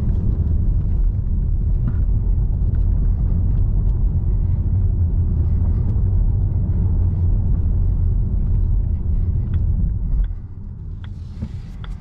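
Steady rumble of an electric Volvo EX30's tyres on cobblestones, heard from inside the cabin. About ten seconds in the rumble drops sharply as the tyres reach smooth asphalt, and a few light ticks follow.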